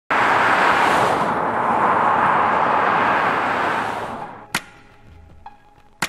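Road noise of a vehicle passing close on the road, loud at first, then fading away and losing its treble over about four seconds. About four and a half seconds in, music starts with a sharp percussive hit, followed by soft pitched notes.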